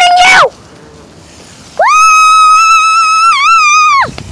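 A child's voice: a short shout, then a long, high-pitched held scream of about two seconds that wavers near the end and stops suddenly.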